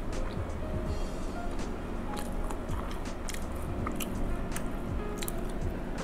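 Quiet background music with a steady low bed, over close-miked chewing and small wet mouth and fork clicks as a person eats noodle soup.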